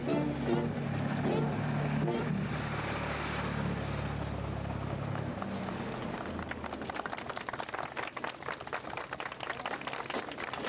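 Brass band music playing and stopping about five seconds in, followed by a crowd applauding with a dense patter of hand claps, with voices among it.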